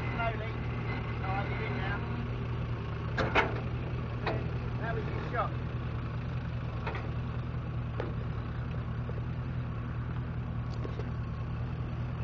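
A Land Rover Discovery 4x4's engine runs steadily at low revs as the vehicle crawls slowly over rough ground. A few sharp knocks come through at intervals.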